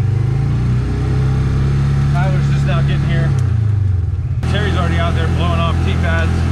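Engine of a Polaris Ranger utility vehicle running close by, its low note stepping up and down a few times as the throttle changes.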